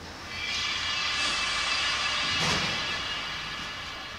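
A steady whooshing swell with a faint hum in it builds up within the first half second and fades toward the end, with a brief knock about halfway through.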